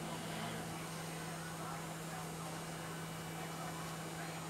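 Steady low hum, such as a motor or appliance running, over faint room noise.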